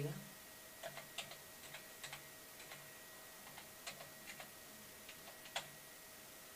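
Faint, irregular keystrokes on a computer keyboard: scattered single key clicks, typing text into a web form field, with the loudest click near the end.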